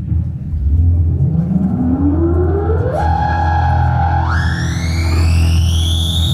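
Live band music: a sustained low bass drone under an effected, distorted tone that slides steadily upward in pitch, holds for about a second, then jumps higher and keeps rising into a high whine.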